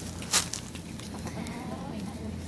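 A short, sharp rustle or knock of handling in the hay about a third of a second in, followed by a chicken clucking faintly.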